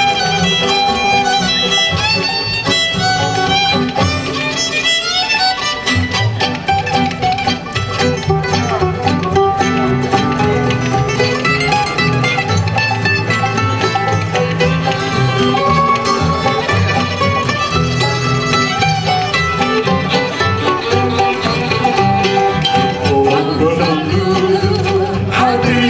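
Live jug band instrumental break: a fiddle plays the tune over strummed banjo and guitar. The accompaniment thickens about six seconds in.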